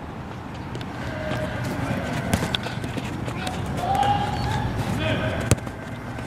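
Children's voices calling out, unclear and at some distance, over outdoor background noise, with two sharp knocks of footballs being kicked.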